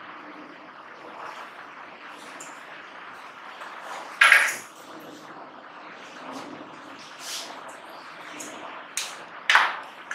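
Marker pen strokes on a whiteboard as a line of text is written and underlined, over a low room hiss. Two brief louder sounds stand out, one about four seconds in and one near the end.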